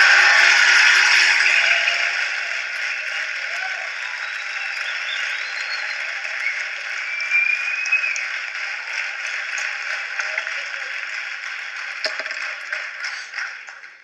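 Studio audience applauding, loudest at the start and settling into steady clapping that carries on throughout.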